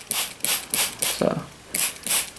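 Water sprayed over potting soil in short hissing squirts, about two or three a second, to keep newly sown seeds moist.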